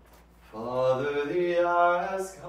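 A man's voice chanting liturgical plainchant, starting about half a second in on a low note and stepping up to a higher, held note.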